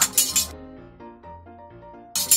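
Large iron yeot (Korean taffy) seller's scissors clacked in a quick rhythmic run of metallic clinks during the first half second, over background music.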